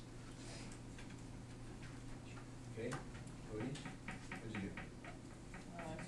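Classroom room tone: a steady low hum, with faint murmured voices starting about halfway through.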